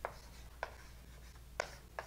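Hand writing, faint: four short taps and scrapes of the writing tool, irregularly spaced, over a low steady room hum.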